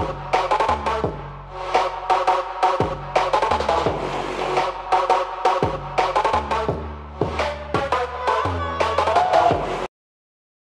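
Dubstep-style electronic music with a heavy drum beat and deep bass notes, cutting off suddenly near the end.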